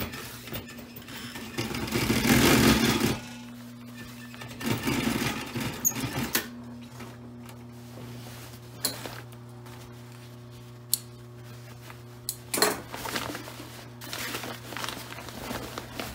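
Adler industrial sewing machine stitching heavy canvas: its electric motor hums steadily while the needle runs in short bursts, the loudest about two seconds in and again around five seconds, with shorter bursts and fabric handling near the end.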